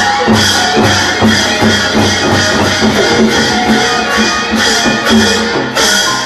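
Burmese nat-ceremony ensemble music: drums and cymbals keep a steady beat of about two to three strokes a second under a melody line.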